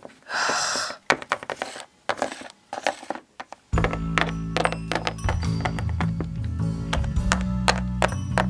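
Light plastic taps and knocks of Littlest Pet Shop toy figures being hopped across a hard floor, after a short swish. Background music with a steady low bass line comes in about halfway through.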